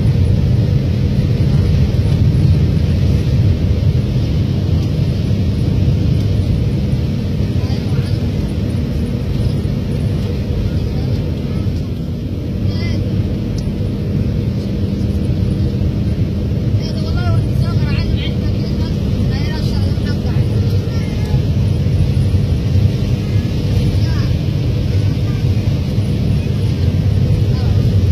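Vehicle engine and road noise heard from inside the cabin while driving: a steady low drone with a constant hum, dipping slightly in level around the middle.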